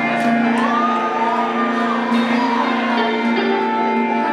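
A live indie rock band plays through a PA: electric guitars ring out in held chords over bass and drums, with one guitar line sliding up and holding about half a second in.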